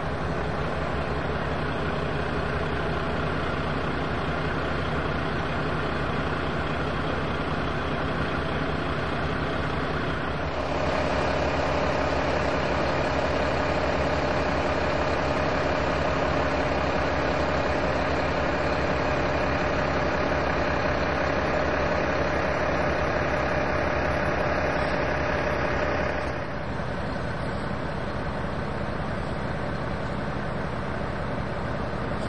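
Engines idling steadily. About a third of the way in the sound switches abruptly to a louder, steady hum with a held drone, then switches back near the end.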